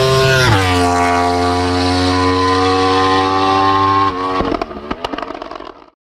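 Motorcycle engine under load: its pitch drops sharply about half a second in, as at an upshift, then holds steady. About four seconds in the throttle closes and the exhaust gives a run of sharp pops, fading out near the end.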